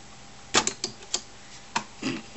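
About five sharp, irregular clicks and taps on the hard plastic front of an Epson inkjet printer as a cat paws at its panel and paper slot. They start about half a second in. The printer itself is not running.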